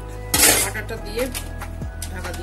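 Background music with a thudding beat, and a short clatter of metal kitchenware against the cooking pot about half a second in.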